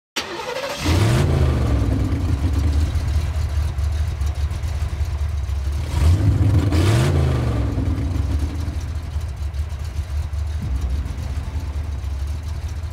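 Cinematic trailer sound design: a steady, deep rumbling drone with two swelling low booms, one about a second in and another about six seconds in, each bending up in pitch and then back down.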